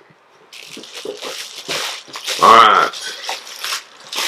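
Plastic bubble wrap rustling and crackling as a wrapped box is lifted out and handled. The sound starts about half a second in and runs as a string of short crinkles. About two and a half seconds in, a brief vocal exclamation is the loudest sound.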